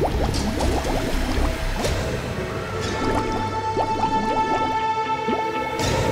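Dramatic background music score with long held tones, over a steady underwater bubbling of many small bubbles.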